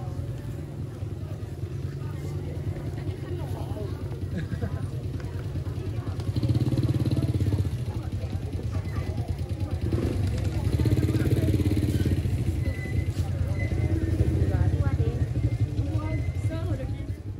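Small motorbike engines running close by, swelling louder as bikes pass about three times, under the chatter of people talking.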